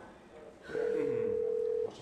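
A telephone tone: one steady pitch held for about a second, starting just under a second in and cutting off suddenly.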